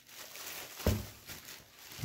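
Plastic wrapping on a package of foam plates rustling as it is handled, with a soft thump about a second in.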